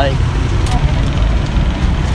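Steady low rumble of road traffic passing close by.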